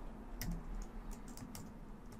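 Computer keyboard typing: a run of light, irregularly spaced keystrokes as a file path is entered.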